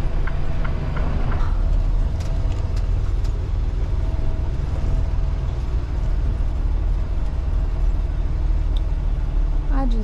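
Semi truck's diesel engine running steadily, heard from inside the cab while the truck is driven through a turn: a low, even engine sound, with a few faint clicks in the first second or so.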